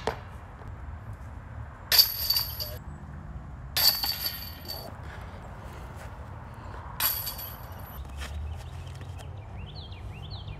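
Putted discs striking the metal chains of a disc golf basket three times, each a sharp clash followed by jingling chains that ring for under a second.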